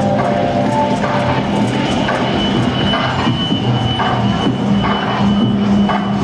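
Live improvised electronic music from laptop and synths: a dense, gritty synth texture over a steady low drone and an even beat, with a high steady tone coming in about two seconds in.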